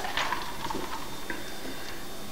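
A few light clicks of ice shifting in a glass of iced soda as it is sipped and lowered.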